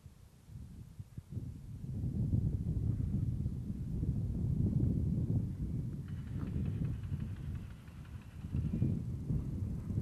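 Wind buffeting the camera microphone: a gusty low rumble that builds over the first two seconds, eases briefly near the end and then picks up again.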